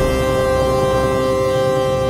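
Chinese-style instrumental background music holding one sustained chord, several steady tones with no change in pitch.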